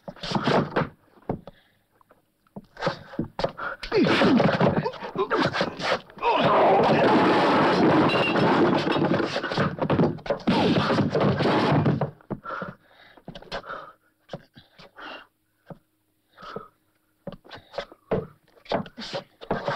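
Fistfight sound effects: thuds of blows and bodies, a chair knocking and scraping, with grunting and panting. The noise is densest and most continuous in the middle, then breaks into scattered knocks and breaths near the end.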